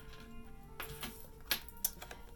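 Soft background music with sustained notes. About one and a half seconds in come two light clicks of a tarot card being picked up off the table.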